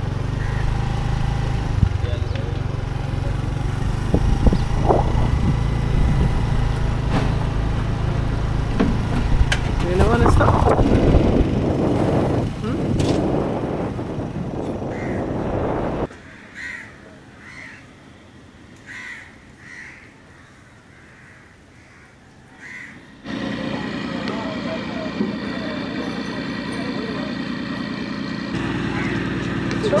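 A motorbike engine and wind noise while riding for the first half, then, after a sudden drop in level, crows cawing repeatedly in a quiet stretch, followed by a steady hum of busy background with voices.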